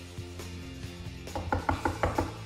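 Quiet background music, then near the end a quick run of about six knocks on a wooden kitchen cabinet door.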